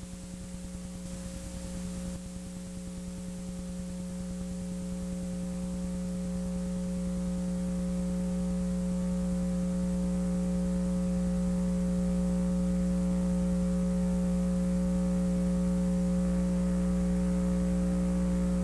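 Steady electrical mains hum: one strong low tone with a ladder of overtones above it, holding an even pitch and slowly growing louder.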